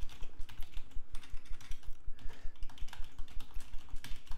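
Computer keyboard typing: a steady run of keystrokes, several a second, as a sentence is typed.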